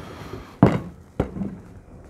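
Two short knocks, about half a second apart, from handling a fishing rod and its wire line guide against a workbench.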